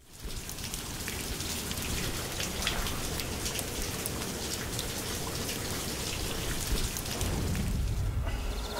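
Steady rain falling, a dense patter of drops on surfaces. A deeper rumble joins near the end.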